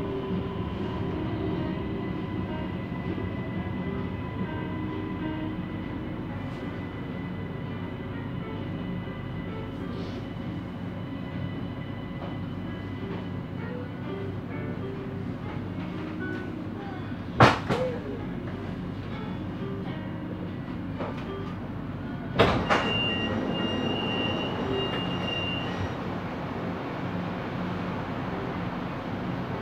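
Siemens Inspiro metro train running, heard from the driver's cab: a steady rumble with faint steady tones over it. Two sharp knocks come about 17 and 22 seconds in, the second followed by a high steady tone for about three seconds.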